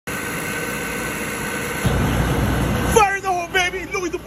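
Carlin oil burner running on an open bench: a steady motor and blower hum with a faint whine, joined about two seconds in by a deeper rumble as the flame burns. From about three seconds a man's voice talks loudly over it.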